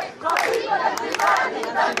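A group of voices shouting and chanting together in unison, loud and overlapping.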